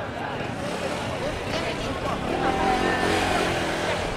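A car engine passing close by, growing louder in the second half, over the chatter of a busy street crowd.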